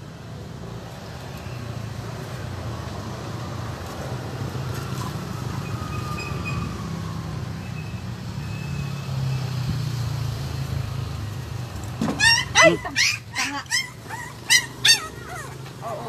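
A young puppy yelping and crying in a string of short, high, wavering cries lasting about three seconds, near the end, in reaction to a vaccine injection. Before that, only a steady low hum.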